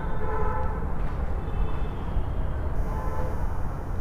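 Distant vehicle horns sounding about three times, each a short held tone, over a steady low rumble of street traffic.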